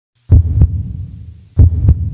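Intro sound effect of deep double thumps in a slow heartbeat-like rhythm. There are two pairs of thumps about a second and a quarter apart, each pair fading into a low rumble.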